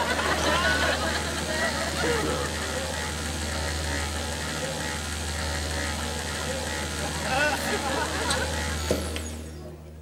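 Steady low hum of a Van de Graaff generator's drive motor running under the chatter of a crowd in a hall. A single sharp click comes near the end, after which the chatter drops away.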